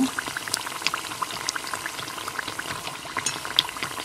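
Rice-flour pathiri frying in hot oil in a small steel saucepan: steady sizzling with many sharp crackles and pops.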